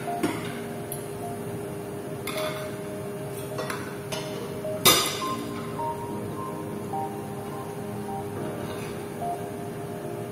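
Metal knives and forks clinking and scraping against plates, a few short sharp clinks with the loudest about halfway through, over steady background music.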